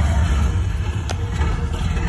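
Loud, deep rumble of a Transformers dark ride's sound effects, with one sharp click about a second in.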